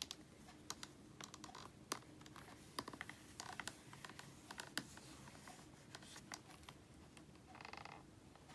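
Faint, irregular clicks and taps of a hand pressing and rubbing an inked clear acrylic stamp down onto card in a stamping tool.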